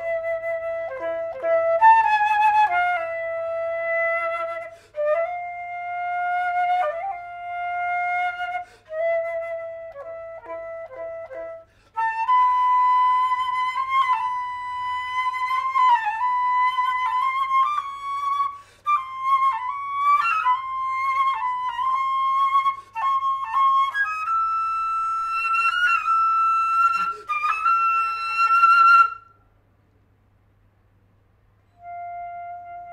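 Solo concert flute playing long held notes broken by short quick figures. The line sits low for the first twelve seconds, jumps higher and climbs again near the end, then stops about a second before the end.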